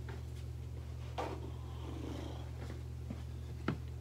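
Quiet garage room tone: a steady low hum with a few faint clicks and a soft rustle about two seconds in.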